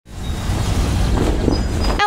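A Toyota Camry sedan driving past, a steady rumble of engine and tyres that swells in over the first half second.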